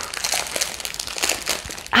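Plastic packaging crinkling as it is handled, a continuous crackly rustle made of many small crackles.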